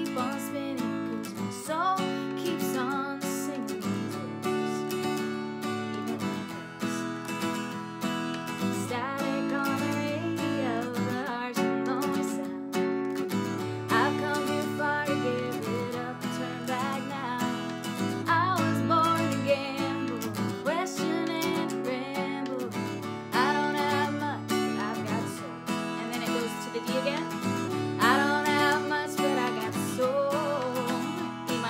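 A woman singing a folk-pop verse while strumming an acoustic guitar, cycling through the chords A, F-sharp minor, D and E.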